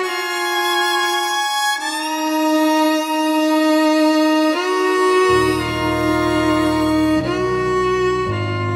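Background music led by a violin playing slow, long held notes. A lower accompaniment comes in about five seconds in.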